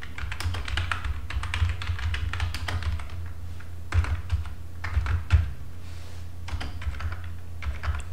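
Typing on a computer keyboard: runs of quick keystrokes, a short pause about three seconds in, then a few louder key presses, over a steady low hum.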